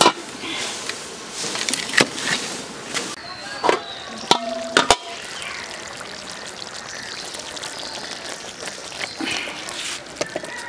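An aluminium lid clanks onto a metal karahi, with a few more sharp knocks over the next few seconds, and a curry simmers in the pan with a steady hiss.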